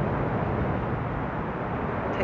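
Steady outdoor background noise: an even low rumble with hiss above it and no distinct tones or events.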